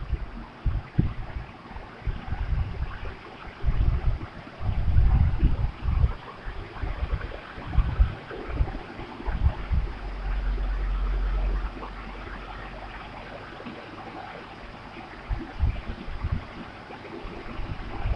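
Irregular low rumbles and thumps on the microphone, with a steady low hum for about two seconds near the middle.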